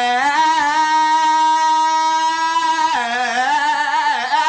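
A man singing unaccompanied, holding one long high note with a slight wobble for about two and a half seconds, then going on with shorter notes that shift in pitch.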